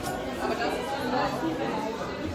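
Faint background chatter of people's voices in an indoor public space.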